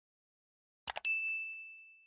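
A quick mouse double-click sound effect, followed at once by a single bright notification-bell ding that rings and slowly fades away: the click-and-ding of a subscribe-button animation turning on the notification bell.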